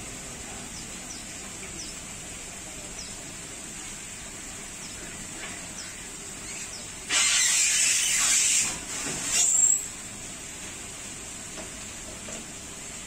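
Steady background noise, broken a little past halfway by a loud hiss lasting about a second and a half, then a shorter hiss that ends in a brief rising squeal.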